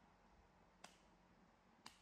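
Near silence broken by a short, sharp click about once a second, twice in all.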